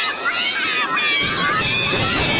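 Several effects-processed copies of a cartoon soundtrack playing at once, pitch-shifted and distorted into warped, voice-like squeals that glide up and down in pitch over a noisy wash.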